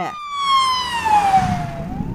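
An emergency-vehicle siren in wail mode: its pitch falls slowly, then turns to rise again near the end. A rushing noise swells over the middle of the fall.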